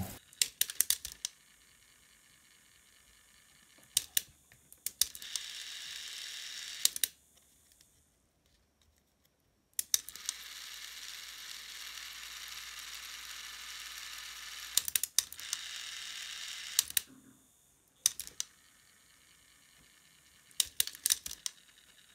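Philips SER1 cassette tape mechanism under test with a new resin gear: groups of plastic clicks and clacks as its levers are pressed and the mechanism engages. Between them come three stretches of its small motor and gear train whirring steadily. The new gear is working.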